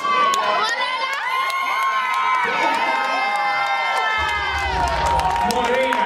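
A crowd cheering and shouting, with several voices holding long high calls at the same time.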